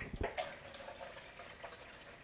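Kitchen faucet running into the sink, a faint even hiss of water, after a few sharp clicks at the start.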